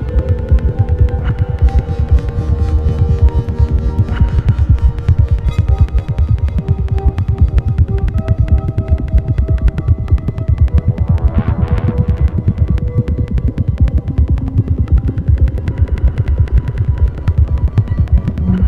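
Experimental electronic music from synthesizers driven by biosonic MIDI sensors that turn an unborn baby's movements in the womb into sound. A fast, low pulsing runs under held synth tones that change pitch slowly, with a brief cluster of higher tones a little after the middle.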